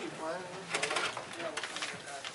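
Indistinct low voices talking quietly in a small room, with a few faint clicks about halfway through.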